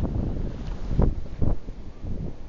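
Wind buffeting the microphone: a gusty low rumble, with two stronger gusts a second or so in.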